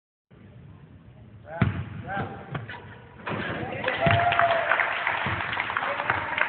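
A basketball thuds on a gym floor, the loudest knock about a second and a half in and a few more after it, while a group of young women chatter and call out, growing to a crowd of voices with one drawn-out shout halfway through.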